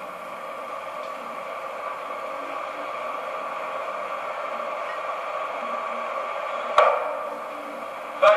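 Steady background hiss and hum of an old play recording, with faint steady tones, broken once by a single sharp knock near the end.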